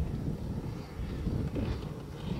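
Distant off-road motorcycle engine droning, mixed with low wind rumble on the microphone.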